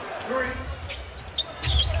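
Basketball bouncing on a hardwood court over arena background noise, with a few sharp knocks about a second and a half in. A commentator's voice starts up near the end.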